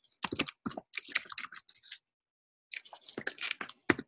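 Computer keyboard keys typed in two quick bursts of clicks with a short pause between, as the tmux prefix key combination is pressed again and again without response.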